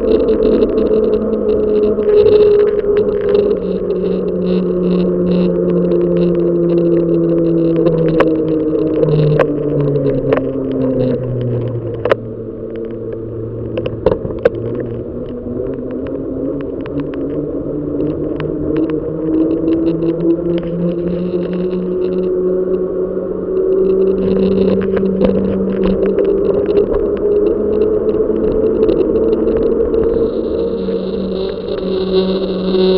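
Bicycle riding on an asphalt road, recorded from the bike: a steady hum slides down in pitch until about the middle, then slowly climbs back up. Scattered clicks and rattles come from the bike over the road surface, most of them in the middle of the ride.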